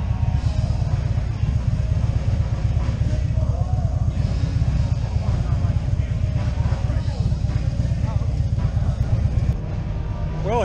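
Harley-Davidson V-twin motorcycle engine running at low speed as the bike rolls slowly, a steady low pulsing note, with faint voices of people in the background.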